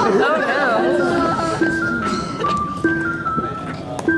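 Background music: a simple repeating melody of clean, steady tones stepping downward over a low held note, with a brief voice near the start.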